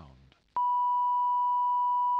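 A steady 1 kHz audio line-up tone starts abruptly about half a second in and holds at one unchanging pitch. It alternates with a recorded spoken channel ident on an idle sound feed during a break in proceedings.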